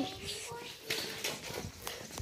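Faint background voices with a couple of short, light knocks.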